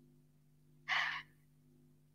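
A woman's single short breath between phrases, about a second in, over a faint steady hum.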